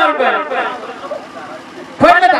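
Speech only: a man's voice through a stage microphone and PA. It is loud for the first half second, then falls away to fainter talk for the rest.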